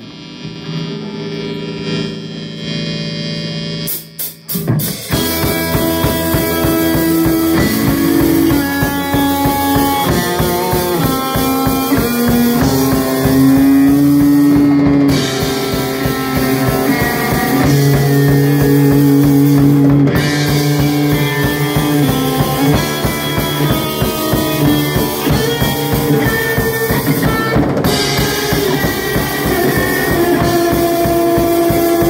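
Live rock band with electric guitar, electric bass and drum kit. A held guitar chord rings alone for about four seconds; a few sharp hits follow, and then the whole band comes in at full volume with a steady beat.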